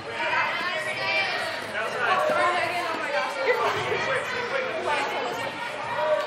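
Several voices talking and calling out over one another in a large indoor sports hall, echoing off the walls.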